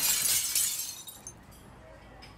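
Intro transition sound effect: a bright, glassy crash like shattering at the top of a rising whoosh, fading out over about a second and leaving near quiet after.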